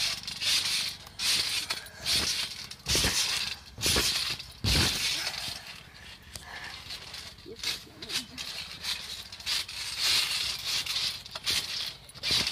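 Someone bouncing on a trampoline: a landing on the mat about once a second, several of them with a deeper thump.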